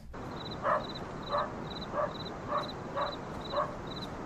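A dog barking six times in quick succession, over insects chirping in a steady high rhythm.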